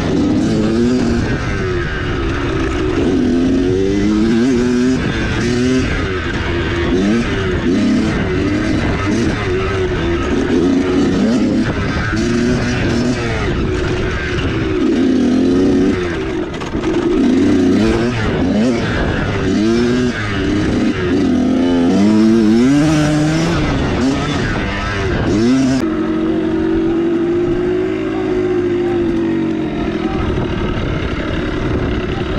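Kawasaki KX100 two-stroke single-cylinder dirt bike engine revving up and down again and again as it is ridden over a rough trail, with wind and trail noise. About four seconds before the end the hiss drops away and the engine settles into one steady, slowly falling note as the bike slows.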